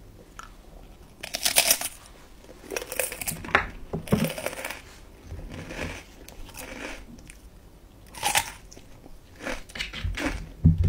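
Close-up crunchy biting and chewing of a crisp snack stick: several separate bursts of crunching, with quieter chewing between them.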